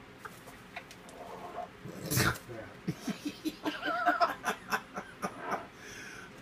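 Yellow-naped Amazon parrot bathing in a cup of water, splashing and flapping its wet wings: a loud rush about two seconds in, then a run of quick sharp flaps and splashes, three or four a second. A wavering voice-like sound rises over the flaps near the middle.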